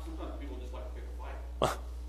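Faint, distant speech from someone in the room, off microphone, over a steady low electrical hum, with one brief louder vocal sound near the end.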